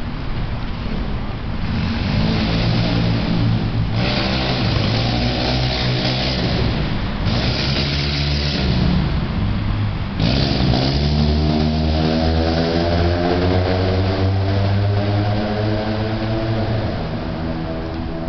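Car engine revving up and down several times, then accelerating hard with a long, steadily rising pitch from about ten seconds in.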